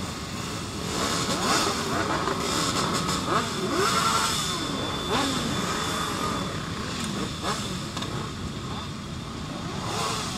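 Many motorcycle engines idling and being blipped at once, overlapping short revs rising and falling in pitch.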